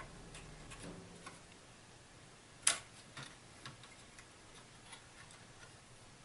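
Small clicks of a RAM module being handled and pressed into its memory slot, with one sharp, much louder click a little under three seconds in as the slot's retaining clips snap into place, then a few lighter ticks.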